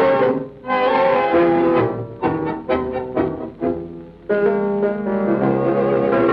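Instrumental passage from a 1946 recording of a tango orchestra, strings to the fore, with no singing. After held notes it plays a run of short, detached chords, then settles back into held notes about four seconds in.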